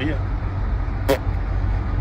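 Steady low rumble of a car's engine and road noise inside the car's cabin, with one brief sharp sound about a second in.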